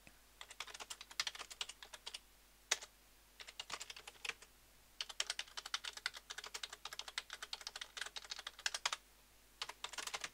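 Typing on a computer keyboard: quick runs of keystrokes separated by short pauses, with one sharper single keystroke a little under three seconds in.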